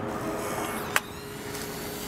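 Polaroid OneStep 2 instant camera's motor whirring as it ejects a freshly exposed print after the shutter fires, stopping with a sharp click about a second in.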